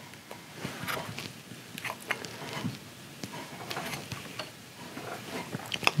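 Small wood chisel scraping and paring a rifle stock's trigger-guard inlet: quiet, irregular light scrapes and small ticks of steel on wood.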